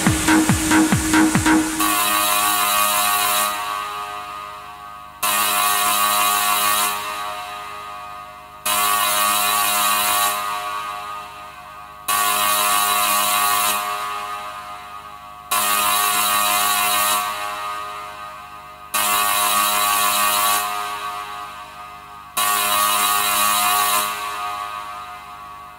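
Electronic dance track in a breakdown. The beat drops out about two seconds in, leaving a sustained synth chord that sounds anew about every three and a half seconds and fades away each time.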